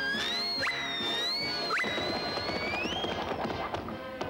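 Cartoon sound effects over the score: a high whistle-like tone glides up, then wavers and rises again near the end, with two quick upward swoops about a second apart. A clattering crash runs through the middle.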